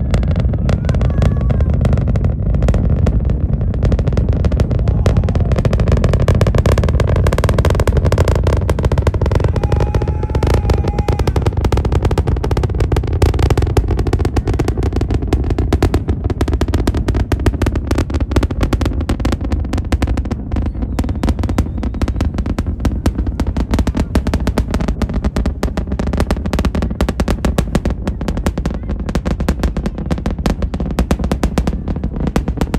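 The SpaceX Starship Super Heavy booster's 33 Raptor engines during ascent, heard from miles away as a loud, continuous crackling rumble.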